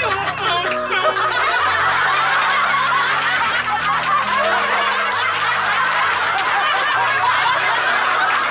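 A large group of women laughing and cheering together, many voices at once, over background music with steady low notes.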